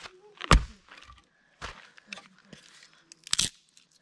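Split firewood being broken into kindling: one sharp crack about half a second in, then smaller cracks and crunches.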